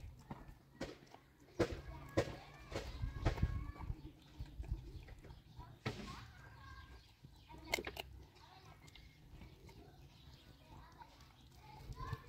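A dog eating meat scraps from a shallow metal bowl: irregular chewing and crunching with sharp clicks of teeth on food and bowl, and faint voices in the background.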